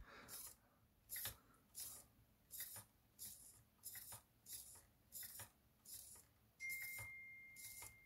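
Small RC car steering servo buzzing faintly in short bursts, about one every two-thirds of a second, as it sweeps the front wheels from full lock to full lock. Near the end a thin steady high-pitched tone sounds for about a second.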